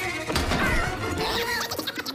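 Cartoon background music mixed with slapstick sound effects: sudden crashing and whacking hits.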